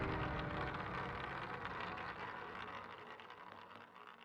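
The tail of an intro jingle: the reverberant wash after its final hit, fading away steadily.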